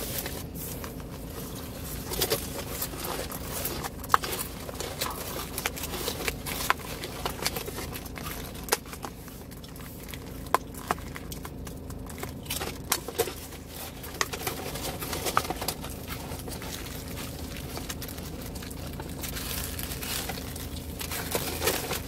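Thin plastic food packaging being handled and a clear plastic salad tub opened: irregular crinkling with scattered sharp clicks and snaps of the plastic.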